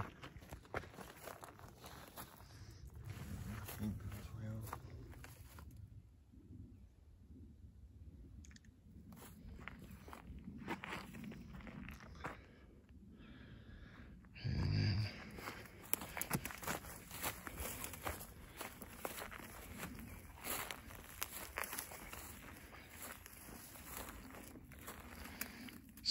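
Footsteps crunching irregularly on dry grass and dirt, with rustling of the handheld camera, as someone walks slowly around a rock pile. About halfway through comes a brief, louder low voice sound.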